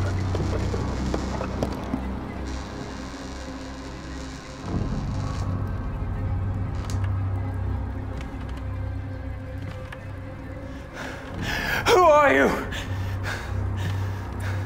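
Low, ominous film-score drone with a knock about five seconds in. Near the end comes the loudest sound: a long, wavering creak that falls in pitch, the sound of the wooden door swinging open on its hinges.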